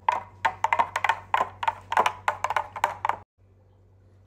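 A long spoon stirring juice in a plastic pitcher, knocking against its sides about four times a second. The knocking cuts off abruptly a little over three seconds in.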